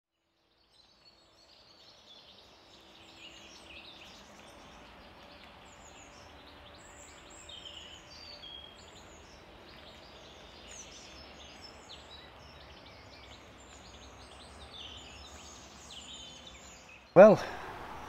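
Faint outdoor ambience with many birds chirping and twittering over a low background hum. A man's voice breaks in near the end.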